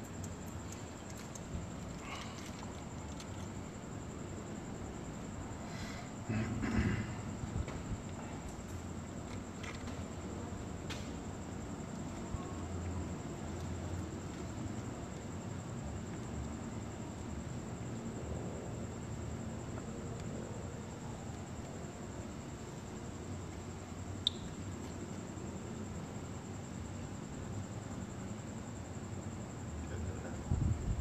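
Quiet night ambience of light drizzle pattering, with a constant high-pitched whine throughout. A short louder stretch of noise comes about six to eight seconds in, and a single sharp click near the end.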